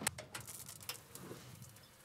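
A camp shower fed by a propane tankless water heater being turned on. There is a sharp click at the start, then faint light pattering and ticking.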